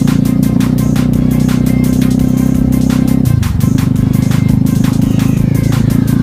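Electronic music with a steady beat of about four strokes a second over a loud, deep bass line that changes about halfway through.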